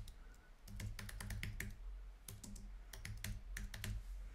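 Typing on a computer keyboard: quick runs of key clicks as a name is typed in.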